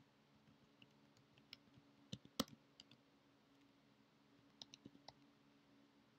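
Faint keystrokes on a computer keyboard: irregular clicks in two short runs, the first about one and a half to three seconds in and the second around five seconds in, over a faint steady low hum.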